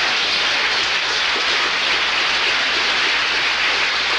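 Studio audience applauding steadily after a joke, a dense even clapping.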